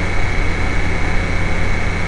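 Steady background hum and hiss of the recording: low droning hum under an even hiss, with a thin steady high whine.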